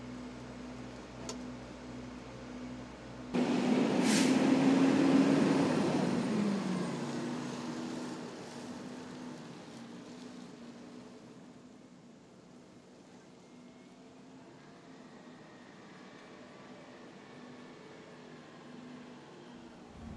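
Diesel engine of a Pierce Arrow XT tractor-drawn aerial ladder truck: first a steady idle heard from inside the cab, then the truck drives past, louder, with a short hiss about four seconds in and the engine's pitch dropping as it passes before fading away.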